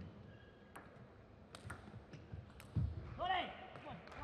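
Table tennis ball clicks: a few sharp, separate knocks of the celluloid-type ball on paddle, table or floor, with a duller thump near the end. Right after it a man's voice gives a brief loud shout.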